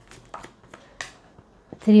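Tarot cards being drawn off the deck and laid on the table: a few light card clicks and snaps, the sharpest about a second in.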